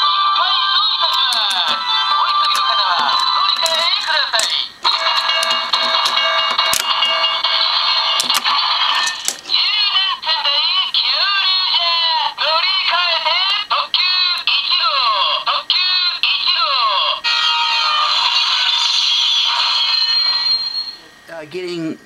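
Electronic ToQger sentai toy playing its recorded transfer (Norikae) sequence back to ToQ 1gou: a synthesized voice calling out over jingle music and electronic beeps, continuous and fading near the end.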